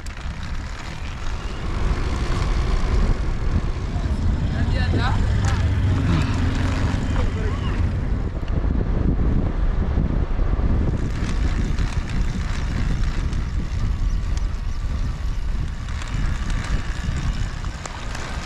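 Wind rushing over the camera microphone on a moving recumbent e-trike, a steady low rumble with road noise underneath.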